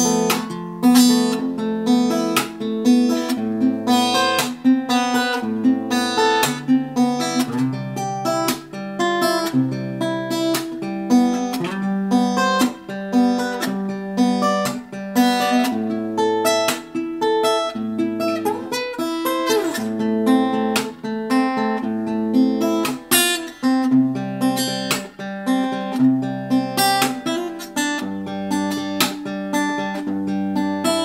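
Tanglewood acoustic guitar played percussive fingerstyle: a picked bass line and melody notes under a steady beat of slaps and taps on the guitar's body and strings.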